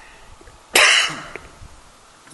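A single sharp cough about three quarters of a second in.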